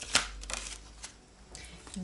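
A small deck of cards being shuffled by hand, with a quick run of rustling card strokes in the first second that then dies down.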